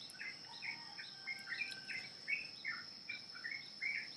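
Faint bird chirping in the background, with many short, quick chirps coming irregularly a few times a second, over a steady high-pitched tone.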